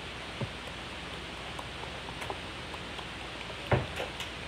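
Steady room hiss, with a soft knock about half a second in and a sharp, louder thump near the end.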